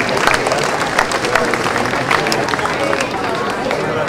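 A large standing crowd talking among itself, a steady babble of many voices with scattered short sharp clicks.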